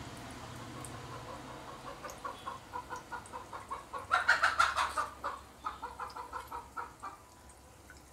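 A hen clucking in a run of short, evenly spaced calls, about three a second, loudest around four to five seconds in.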